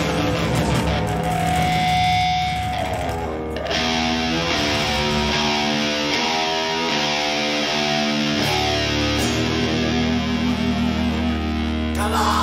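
A live band plays loud electric guitar, bass and drums. A held guitar note breaks off about three seconds in, then the guitars play a riff of stepped, held notes. The low end comes in heavier about eight and a half seconds in.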